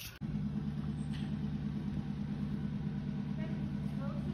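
Car engine idling steadily with a low, even rumble, starting abruptly just after the opening moment.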